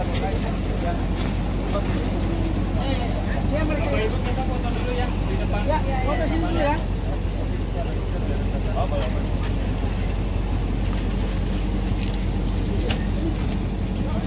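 An engine running steadily at idle, an even low hum, with people talking over it.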